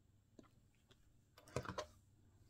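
A few faint light clicks, then a short cluster of louder clicks and rubbing near the end, as fingertips start spreading a dab of face cream over the cheek.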